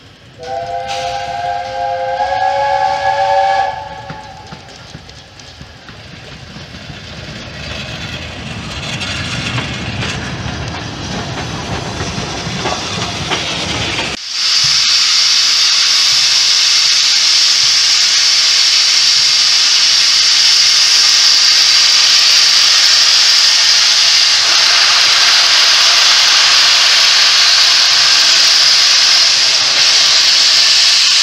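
A steam locomotive's multi-note whistle sounds for about three seconds, followed by a low rumble that slowly grows. About fourteen seconds in, a loud, steady hiss of steam starts abruptly: LNER A3 Pacific Flying Scotsman blowing steam from its open cylinder drain cocks.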